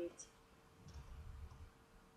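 Faint clicking and handling sounds of a metal crochet hook working yarn: a couple of light high ticks and a soft low rumble from the hands.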